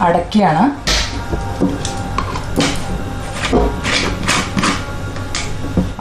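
Plastic screw lid being twisted down tight onto a large glass jar: a run of scraping clicks with low handling thumps.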